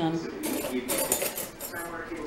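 Kitchen utensil and dishware clinking and scraping, a string of short clinks, as leftover chicken soup is dished out.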